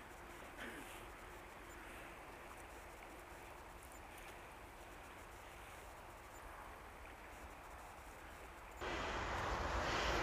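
Faint, steady rush of a wide, fast river flowing past the bank. About nine seconds in it cuts abruptly to much louder wind rumbling on the microphone.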